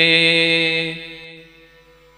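A man singing a Malayalam Islamic devotional song, holding the last note of a line steady as it fades away over about a second, leaving a short hush.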